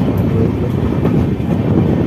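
Indian express train running at speed, heard from inside a moving coach through its open window: a steady, loud rumble of wheels on the rails.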